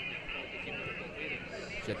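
Faint, steady background noise from the pitch with indistinct distant voices. A man's commentary voice begins just before the end.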